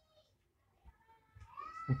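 A faint, drawn-out animal call in the background. It rises in pitch about a second and a half in and then holds steady.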